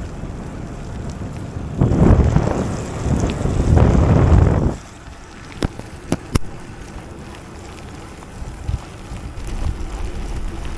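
Wind buffeting the action camera's microphone on a bicycle riding in the rain: a loud rushing burst for about three seconds starting near two seconds in, then a softer steady rush with a few sharp ticks.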